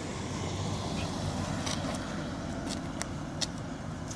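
A car on the road, a steady low rumble, with several short scuffs and taps of sneakers on asphalt.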